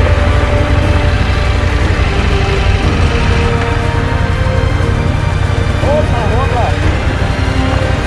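Background music with a heavy, steady low beat.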